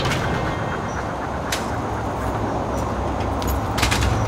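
Sharp clicks from a glass entrance door's metal handles and latch: one at the start, one about one and a half seconds in, and a quick cluster near the end. They sit over a steady low rumble.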